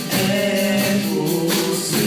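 A live youth band playing a Portuguese-language pop-rock song: several young voices singing together over electric guitar, bass guitar and drum kit, with a steady beat of cymbal strokes.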